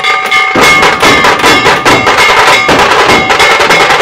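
Loud percussion music: dense, rapid drumming with ringing, bell-like metal strikes.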